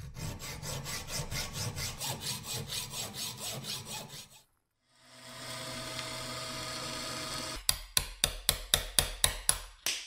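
A hacksaw cuts through rusty steel held in a vise, in quick, even strokes at about four a second, for roughly four seconds. After a short break a drill press runs steadily as its twist bit drills into a metal part. In the last two seconds comes a fast run of about ten sharp, loud metal strikes, a hammer driving a pin punch.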